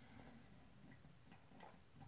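Near silence, with a few faint, soft clicks of swallowing as someone gulps steadily from a large glass bottle of beer.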